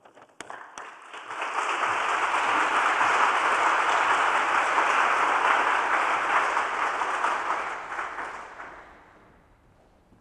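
Audience applauding, swelling in over the first two seconds, holding steady, then dying away near the end.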